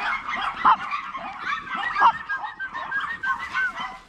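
Several chihuahuas yapping and barking at once in an overlapping high-pitched chorus: aggressive barking at a newly arrived dog. Two louder yaps stand out, a little under a second in and about two seconds in.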